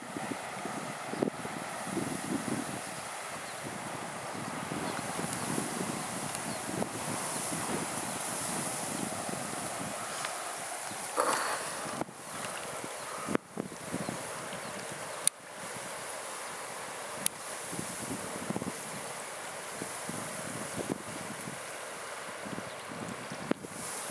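Steady wind buffeting the microphone over water at the shoreline, broken by a few sharp clicks, with a short high call about eleven seconds in.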